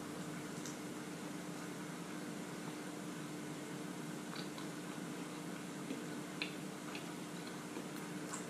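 Quiet closed-mouth chewing of a first bite of fried-chicken burger, with a few soft faint clicks from the mouth over a low steady hum.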